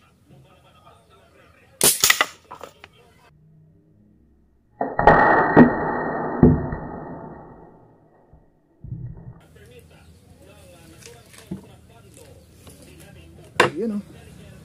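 A homemade PVC air rifle styled on an FX Impact M3 fires a single sharp shot. About three seconds later a deeper, muffled bang fades out over about three seconds, and a short sharp click comes near the end.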